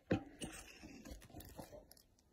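Handling noise of a smartphone being fitted into a ring light's clamp-style phone holder, heard through the phone's own microphone: a sharp click just after the start, then several lighter knocks and rubbing sounds as it settles in.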